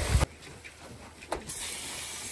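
Hiss of a cleaning sprayer: a loud spray cuts off sharply a quarter second in, a single click follows about a second later, and a softer steady hiss starts up again.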